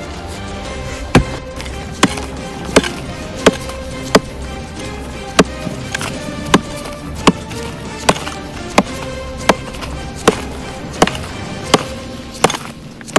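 Pickaxe striking hard, dry ground and rock in sharp, repeated blows, about one every 0.7 seconds, over background music with held tones.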